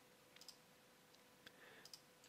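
Near silence broken by a few faint computer mouse clicks.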